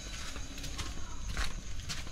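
Footsteps on a stone alley at walking pace, short scuffing steps about twice a second.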